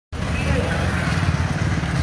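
Motorcycle engines running in street traffic: a steady low rumble with road noise, and faint voices underneath.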